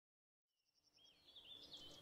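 Birdsong fading in from silence: a quick run of high repeated pips, then warbling, chirping phrases. It is faint throughout.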